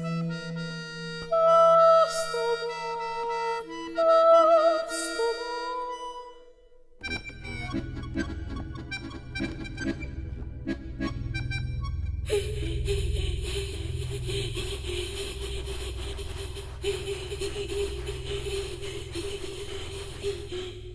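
Contemporary chamber music for accordion. Held high notes, some wavering with vibrato, give way about seven seconds in to a sudden dense, low rumbling texture scattered with clicks. From about twelve seconds an airy hiss sits over a steady held note.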